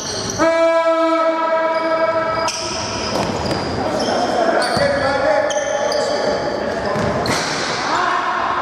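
Basketball scoreboard buzzer sounding once for about two seconds, over the squeak of sneakers on the gym floor and players calling out.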